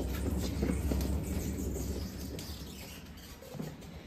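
Platform cart rolling on its casters across a concrete floor: a low rumble that fades away over the second half, with a few light clicks.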